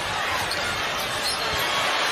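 Basketball being dribbled on a hardwood arena court over a steady crowd din.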